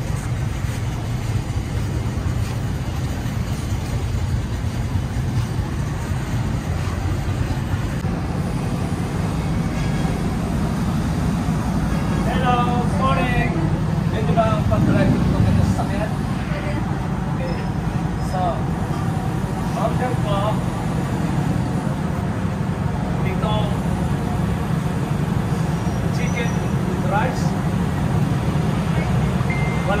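Steady low rumble of street traffic and vehicle engines, with voices talking at times in the middle and near the end.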